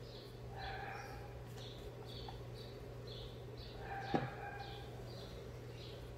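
Faint bird chirping in the background: short high chirps repeating every half second or so, with a lower call about a second in and another about four seconds in. A light click sounds just after four seconds, over a steady low hum.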